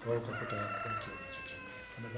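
A rooster crowing: one long call of about a second and a half that falls slightly in pitch near the end.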